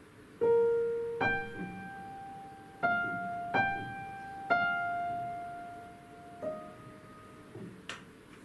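Upright piano playing a short single-line melodic motive of about six notes, each struck and left to ring and decay, the last one softer. It is played as an energetic crescendo with no dynamic changes, the volume held level rather than swelling.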